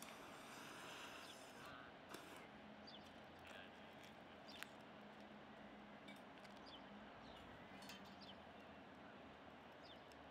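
Near silence: faint outdoor background with a few faint high chirps and two small clicks, about two seconds in and again midway.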